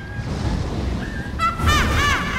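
Film soundtrack with a low, steady rumble like wind and surf, under music. Near the end a woman's voice breaks into a quick burst of high-pitched, shrieking cackles.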